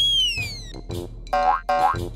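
Cartoon jump sound effect: a whistle-like tone glides down in pitch over the first half second or so, over upbeat children's background music. About a second and a half in come two short, bright pitched squeaks.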